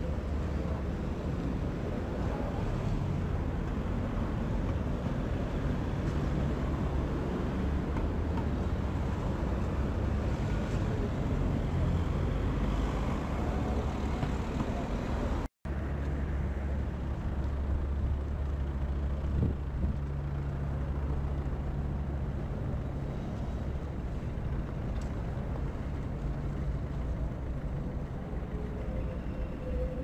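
City street traffic: the steady hum and rumble of passing cars and buses. It cuts out for an instant about halfway through.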